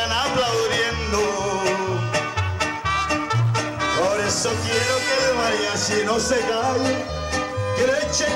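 A live mariachi band playing: violins carry the melody over strummed guitars and low plucked bass notes that keep a steady beat.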